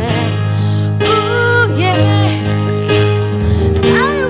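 A woman singing a ballad into a microphone, backed by a strummed acoustic guitar and an electric keyboard, in a live acoustic band performance. Her voice holds long notes with vibrato.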